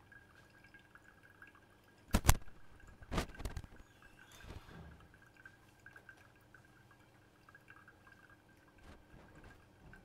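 Hot water poured slowly in a thin stream from a gooseneck kettle onto coffee grounds in a paper-filtered pour-over cone dripper, faint. Two sharp knocks stand out, about two seconds in and about three seconds in; the first is the loudest sound.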